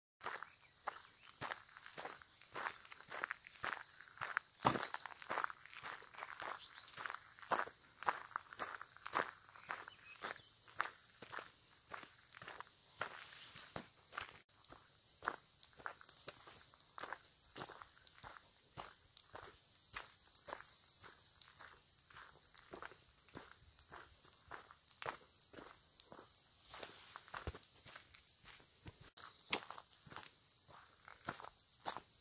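Footsteps crunching on a gravel trail at a steady walking pace, about two steps a second.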